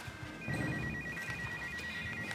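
Telephone ringing with a high electronic trill, two tones alternating quickly, starting about half a second in.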